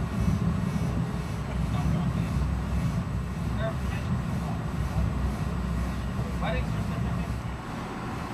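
Steady low rumble of an Amtrak passenger coach running along the track, heard from inside the car, with faint voices now and then.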